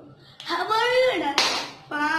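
A single hand clap about one and a half seconds in, after a boy's drawn-out voice that rises and falls in pitch. His voice starts again near the end.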